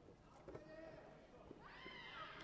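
Faint, echoing sports-hall ambience: a distant voice calls out briefly twice, with a few light knocks.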